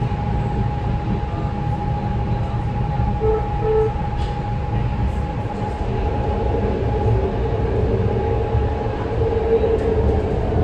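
BART Legacy Fleet train heard from inside the passenger car while under way: a steady low rumble of wheels on the track, with a steady whine held above it.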